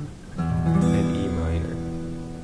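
Acoustic guitar: a chord strummed about half a second in, ringing on and slowly fading.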